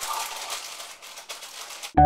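Irregular crinkling and rustling noise, cutting off abruptly near the end.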